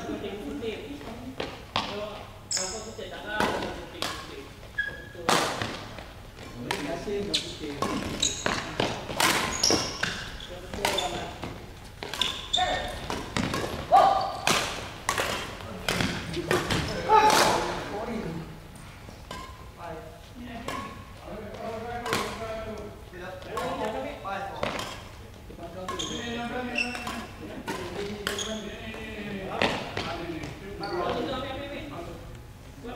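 Badminton play in a large hall: sharp racket strikes on the shuttlecock and thuds, irregularly spaced, with voices in the background throughout.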